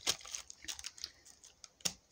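Clear plastic wrapping around a brake disc crinkling and rustling under a hand: a run of light, irregular crackles and clicks, with one sharper click near the end.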